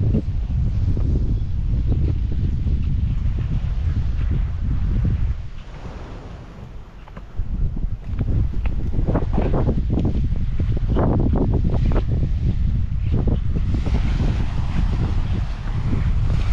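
Wind buffeting the microphone, a heavy rumble that eases for about two seconds near the middle and then comes back in gusts. Near the end the hiss of small waves washing onto the shore rises under it.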